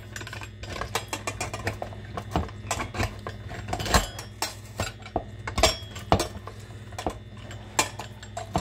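Hand-cranked stainless-steel food mill straining tomatoes: its blade scrapes and clicks irregularly against the perforated disc and bowl as the crank is turned.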